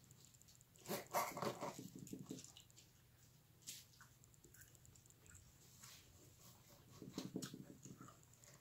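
Faint dog sounds, briefly louder about a second in and again near the end.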